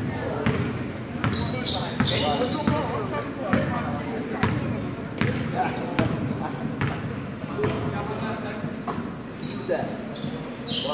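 Basketball bouncing on a hardwood gym floor during play, a run of sharp thuds at uneven spacing, with short high sneaker squeaks and the voices of players and spectators around it.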